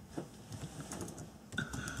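Faint, irregular clicking of computer keyboard keys being typed.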